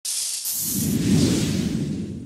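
Synthesized intro sound effect: a bright high hiss from the start, joined about half a second in by a deep, rumbling whoosh that holds steady and begins to fade near the end.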